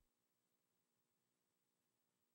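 Near silence: only a very faint steady hum and hiss.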